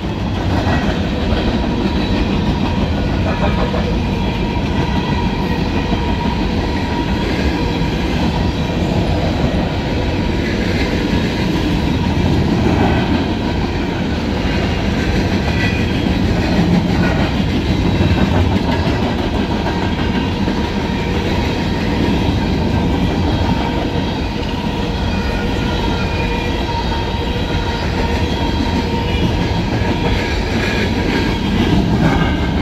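An empty CSX coal train's hopper cars rolling past, a steady rumble of wheels on rail.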